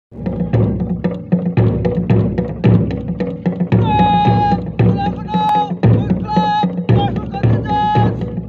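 March music with a steady drumbeat of about two beats a second, accompanying a march past. From about four seconds in, a high melody line joins in short held notes.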